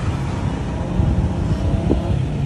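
Steady low rumble of a motor scooter close by, mixed with wind buffeting the microphone.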